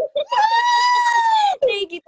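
A woman's high-pitched cheering whoop, held for about a second with a slight rise and fall, with short bursts of voice just before and after it.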